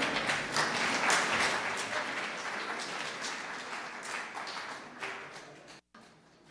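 Audience applauding, loudest about a second in and then dying away steadily, cut off abruptly near the end.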